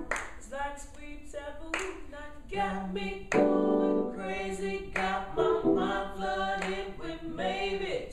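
Several voices singing a cappella, with sharp hand claps landing among the phrases.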